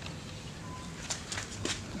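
Quiet background with a few faint, light clicks scattered through it.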